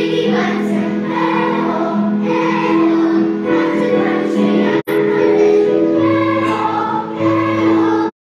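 Children's choir singing a samba song, sustained notes held by many voices together; the sound drops out for an instant about five seconds in.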